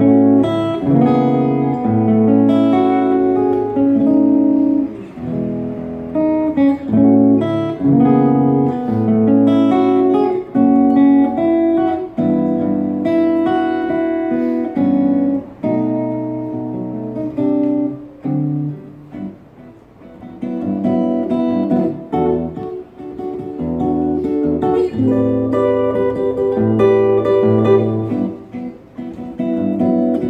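Solo acoustic guitar playing a jazz piece, mixing chords and single-note melody lines, with a softer passage for a few seconds just past the middle.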